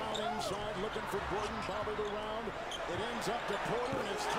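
NBA game broadcast audio at low level: a basketball bouncing on the hardwood court and sneaker squeaks over steady arena crowd noise, with a commentator's voice faint underneath.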